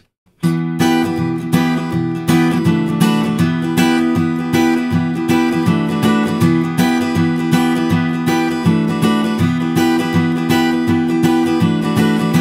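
Steel-string acoustic guitar with a capo on the seventh fret, strummed at full speed in a steady rhythmic pattern that alternates an A minor shape with the open strings. The strumming starts about half a second in.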